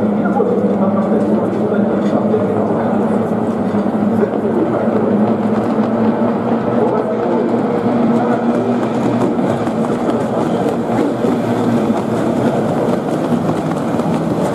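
Kyōtei racing boats' two-stroke outboard engines running on the water, mixed with a steady hubbub of crowd voices.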